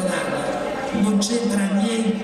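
A man's voice speaking over a public-address system.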